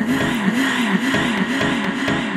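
Electronic dance track in a breakdown: the kick drum drops out, leaving a bright noise wash and a low synth tone that swoops down and back up in pitch a couple of times a second.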